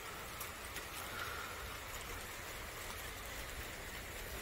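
Steady rain falling, heard as an even hiss with scattered faint ticks of drops landing.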